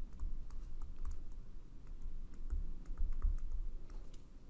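Pen-tip handwriting on a tablet or writing surface: a run of small, irregular clicks and taps with low thuds, as a word is written out.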